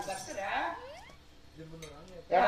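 Soft voices with a single brief, light metallic chink near the end.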